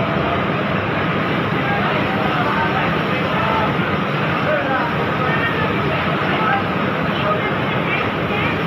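Steady machine noise of a garment factory floor, a constant hum and hiss, with workers' voices chattering in the background.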